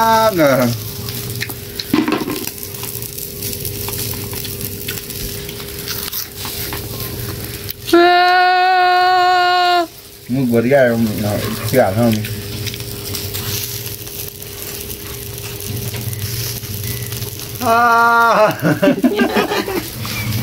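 A person's voice making drawn-out 'ah ah' sounds, with one long held note about eight seconds in and more short 'ah's a little later and near the end, over a steady crackling hiss like sizzling.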